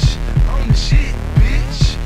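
Baltimore club music playing as an instrumental beat with no vocals: a heavy kick drum about three times a second over a steady low bass, with a higher percussion hit about once a second.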